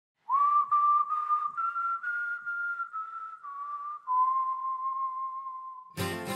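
A person whistling a slow melody of long held notes, creeping slightly upward over the first two seconds, then stepping down, ending on a low note held for about two seconds.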